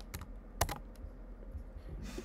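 Typing on a computer keyboard: a few sharp key clicks, the loudest a little over half a second in, as a line of code is finished and the cell is run.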